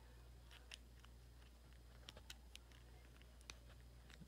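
Near silence with a handful of faint, scattered plastic clicks from a Bakugan figure being handled and folded.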